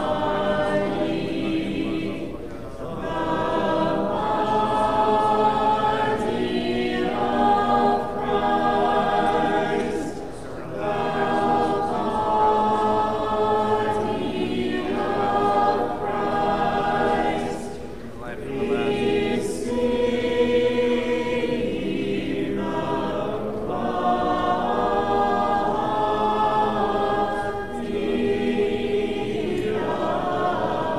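A cappella church choir singing Orthodox liturgical chant in several-part harmony, in held phrases a few seconds long with short breaks between them.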